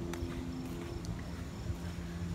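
A steady low hum with a few faint, irregular footsteps on asphalt as someone walks alongside a car.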